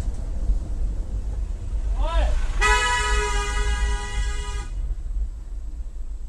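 A vehicle horn sounded in one steady blast of about two seconds, just after a short voiced shout, over the low rumble of an idling engine and road noise.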